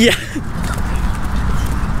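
Wind rumbling on the microphone outdoors, a steady low buffeting, with a few faint footfalls of people running on grass.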